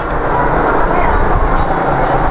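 Street ambience: a steady rumble of passing motor traffic.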